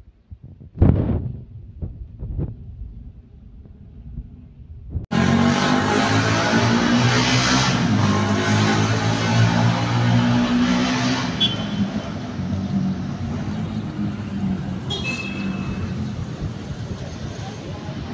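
A few sharp knocks over near-quiet, then about five seconds in a sudden, loud, steady din of city street traffic with a vehicle engine running close by and two short high tones later on.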